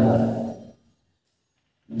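A man's voice holds a drawn-out word that fades out within the first second. Then there is a dead silence of about a second, with nothing at all on the track, before his speech starts again at the very end.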